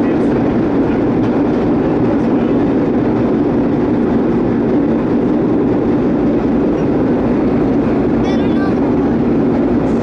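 Vintage R1-9 subway cars running at speed through a tunnel, heard from inside the car: a steady, loud rumble of wheels on rail.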